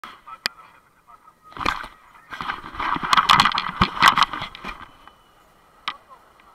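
Handling noise from a handheld camera: its microphone rubbing and knocking against clothing in irregular bursts, with sharp clicks about half a second in and just before the end, mixed with people's voices.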